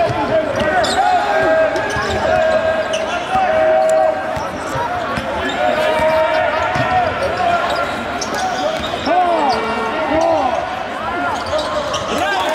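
Basketball game sound: the ball bouncing on the hardwood court while sneakers squeak in many short chirps, over the murmur of voices in the gym.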